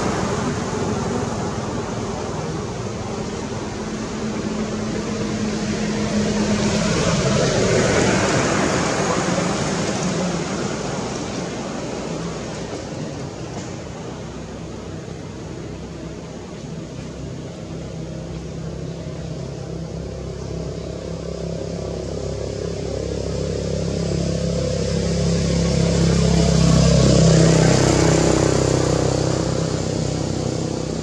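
Motor vehicles passing on a nearby road: a continuous engine and traffic noise that swells and fades, with one pass about eight seconds in and a louder one near the end.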